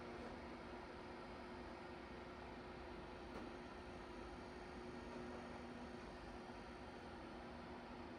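Near silence: faint room tone with a low, steady hum.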